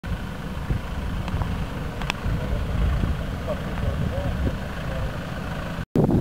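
Land Rover engine idling: a steady low rumble, with faint voices over it. It cuts off abruptly just before the end.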